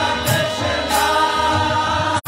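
Kirtan: several voices chanting together over harmonium chords, with a steady beat of drum and hand-cymbal strokes.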